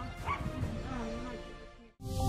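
A dog yelping and whining, a few short pitched calls over a low background, fading out just before the end.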